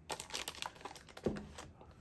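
Clear plastic bag crinkling as the power supply wrapped in it is handled and set down into foam packing, with irregular crackles.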